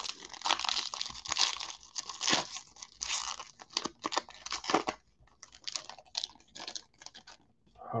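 A Panini football card pack's wrapper being torn open and crinkled by hand: dense, irregular crackling for about five seconds, then sparser crackles and ticks.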